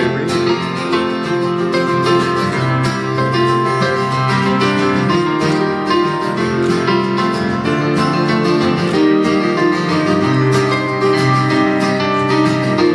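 Acoustic guitar strummed with keyboard backing, played live as an instrumental break between sung lines of a pop song.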